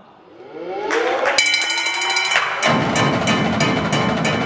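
Indoor percussion ensemble opening its show: sliding, held tones swell up over the first second, a sharp hit about a second and a half in sets off steady ringing tones, and the drums and full ensemble come in loud soon after.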